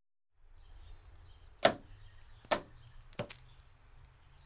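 Four sharp knocks over a steady low background hum that begins after a brief silence: a loud one about a second and a half in, another about a second later, then a quick pair near the end.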